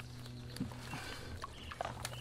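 Faint handling noise of a pump hose and mesh basket being moved among reeds at the water's edge: light clicks and knocks over a low steady hum.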